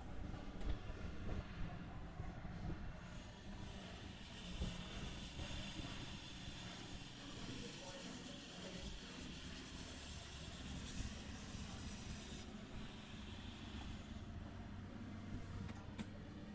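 Hot air plastic welder blowing as polypropylene filler rod is welded into a bumper cover crack: a faint, steady low hum with a hiss that comes in a few seconds in and cuts off suddenly about three-quarters of the way through.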